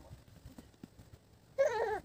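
An infant gives a short fussy cry near the end, its pitch wavering and then falling. Before it, faint soft knocks and rustles.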